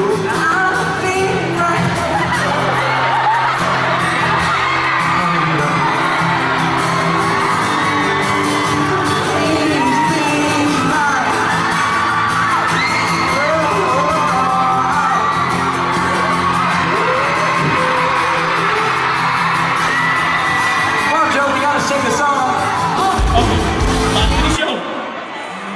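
Live pop-rock band with a lead singer and acoustic guitar, recorded from among the audience, with fans whooping. A low thump comes near the end.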